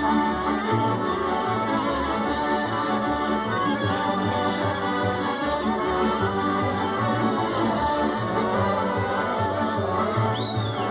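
Slovak folk dance music from a small instrumental band, with a steady pulsing bass under the melody.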